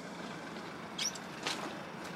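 Steady fizzing of bubbles breaking at the water's surface as a crab trap sinks, with two short high squeaks about a second and a second and a half in.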